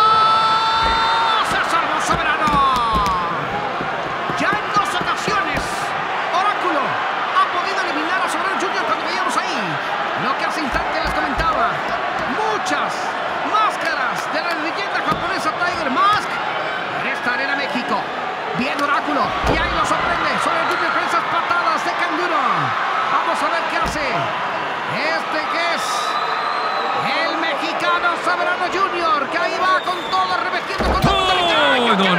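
Wrestling arena crowd shouting and chanting without a break, with repeated dull thuds of bodies and hands hitting the ring canvas.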